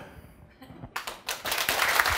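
Audience applause starting about a second in and quickly building to a steady clatter of many hands clapping.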